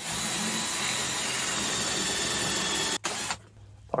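Cordless drill with a pocket-hole bit boring into a wooden board through a pocket-hole jig. It runs steadily and stops suddenly about three seconds in.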